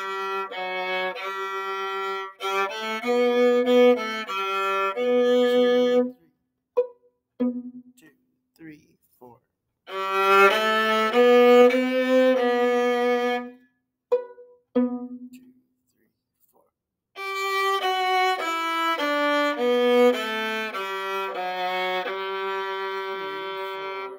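Solo viola played with the bow, a run of separate, steadily held notes in a simple student melody. The playing breaks off about six seconds in and again about fourteen seconds in, with only a few short notes in the gaps, then carries on to the end.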